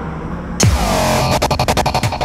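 Electronic thriller film score: a sudden heavy hit with a falling boom just over half a second in, then a rapid stuttering pulse.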